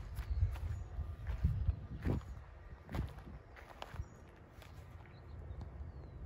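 Footsteps on a lawn, a soft step about every half second, growing fainter in the second half, over a low rumble on the microphone.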